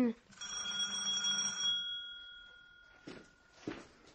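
A doorbell rings once, a single struck chime that slowly fades over about three seconds. A few faint knocks or steps follow near the end.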